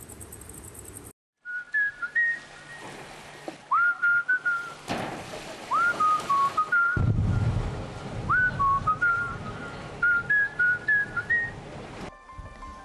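A whistled tune of short held notes, several of them starting with a quick upward slide, over a light hiss; a low rumble joins about seven seconds in.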